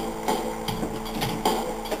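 Several light knocks and handling noises from a plastic game guitar controller being passed from one person to another, with faint music underneath.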